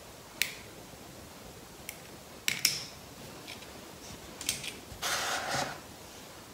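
A small handheld lighter clicking several times, some clicks in quick pairs, then catching near the end with a short rushing hiss as it lights a candle.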